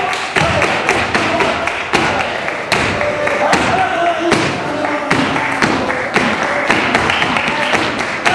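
Flamenco palmas: several men clapping in a quick, sharp rhythm, with foot stamps thudding on the stage boards and a voice calling out over the clapping.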